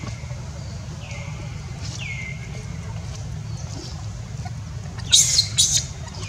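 Animal calls: short falling whistle-like calls repeated about once a second, then two loud, shrill calls in quick succession about five seconds in, over a steady low rumble.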